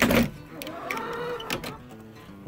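Wood-framed chicken-wire coop door being unlatched and pulled open: a short loud rattle at the start, then a lighter knock about a second and a half in.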